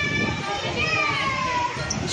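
Distant voices, including high-pitched children's voices, over steady background noise.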